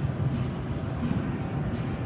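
Ambience of a busy exhibition hall: a steady low rumble with faint, scattered distant voices.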